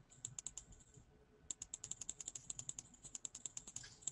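Faint typing on a computer keyboard: a few keystrokes, a short pause about a second in, then a quick run of keystrokes.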